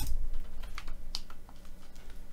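Computer keyboard keystrokes: a firm key press at the start, the Enter key confirming a typed value, followed by a few lighter clicks about a second in.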